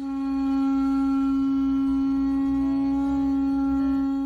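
Conch shell trumpet blown in one long, steady, low note: the signal that a boat is approaching and the swing bridge must be opened.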